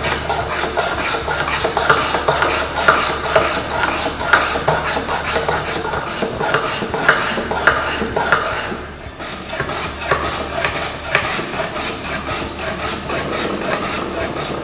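Lie-Nielsen No. 60½ low-angle block plane taking repeated short strokes across a wooden board, the blade shaving off curls: a rasping, scraping hiss about once or twice a second, with a short pause about nine seconds in.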